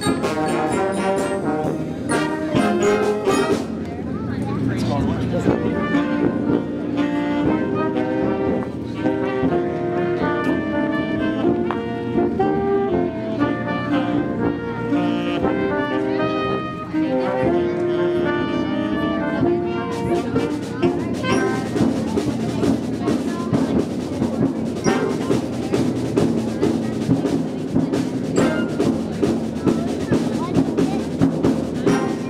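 Community concert band of brass and saxophones playing: held chords and a moving melody, turning about twenty seconds in to a busier passage with more percussion. The band is close and loud enough to distort the recording.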